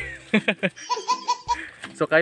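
A person laughing in a few short bursts, ending in a quick run of four even 'ha' pulses about a second in.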